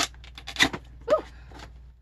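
Cardboard and paper packaging being handled while unboxing a camera kit: a run of short clicks and knocks in the first second, the sharpest about half a second in, then faint handling. A brief "ooh" is voiced about a second in.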